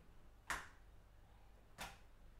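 Two sharp taps about a second and a half apart, the first louder: an egg being knocked against a hard edge to crack its shell.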